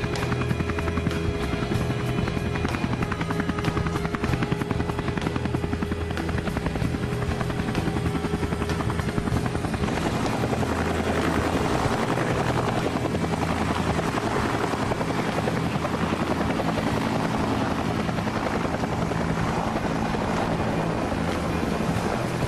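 Helicopter rotor chop running steadily, with background music underneath; about halfway through, a rushing noise grows louder.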